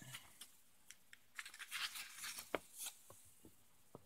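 Faint rustle of a comic book's paper page being handled and turned, with a few light ticks and taps.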